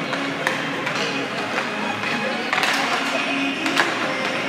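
Music playing over a hockey arena's sound system, with a few sharp clacks of sticks and pucks from players warming up on the ice.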